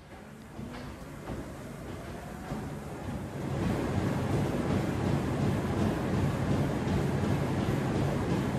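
A Technogym motorised treadmill, its motor whine rising as the belt speeds up over the first few seconds, then running steadily louder with a low rumble and a runner's footfalls on the belt.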